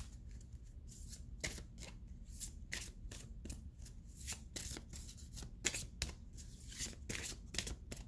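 A deck of tarot cards being shuffled by hand: an irregular run of sharp card snaps and taps, a couple to a few each second.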